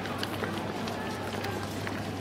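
Footsteps of a group walking on pavement, with scattered voices of people around, over a steady low hum.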